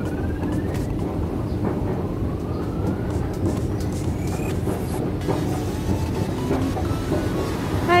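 Moving escalator running under the rider, a steady low rumble with occasional faint clicks from the steps and drive.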